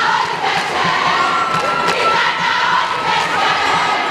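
A large crowd of schoolgirls in the stands singing and shouting a jama cheer song together, loud and continuous, with one high voice holding a long note in the middle.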